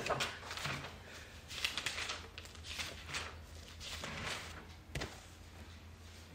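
Room noise in a church hall with people standing and waiting: scattered knocks, shuffling and rustling, one sharper knock about five seconds in, over a steady low hum.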